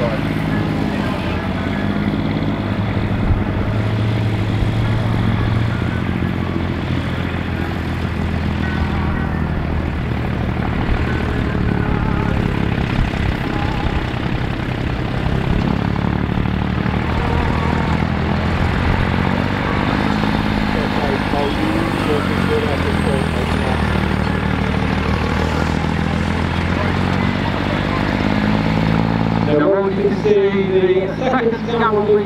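Scammell Explorer 6x6 recovery truck's engine running under load as the truck crawls over rough, uneven ground, a low, steady engine note that shifts a little in pitch.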